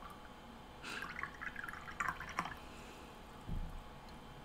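Faint handling noises off-camera: light rustling with a few small clicks, then a soft low thump near the end.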